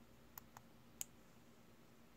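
Plastic clip-on stitch marker clicking as it is handled and snapped onto the knitting: three small clicks, the loudest about a second in, against near silence.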